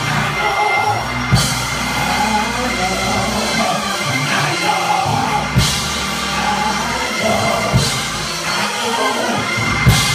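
Church band music: sustained keyboard chords backed by a drum kit, with a cymbal crash about every four seconds.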